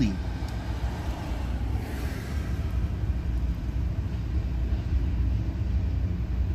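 Steady low rumble inside a car's cabin, with a faint hiss that swells briefly about two seconds in.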